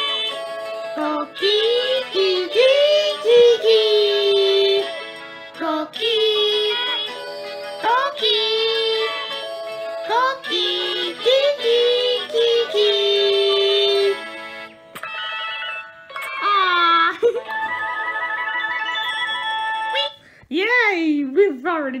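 Cartoon characters singing a repeated children's tune in short phrases with music. About two-thirds through, the tune gives way to higher, wavering chirp-like calls.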